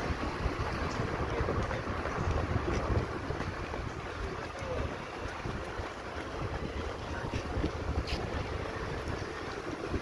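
Wind buffeting the microphone of a camera riding on a slowly moving vehicle, over a low, steady rumble of the vehicle and its tyres.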